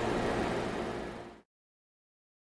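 Steady background hum and hiss of the shop's room noise, fading out about one and a half seconds in to silence.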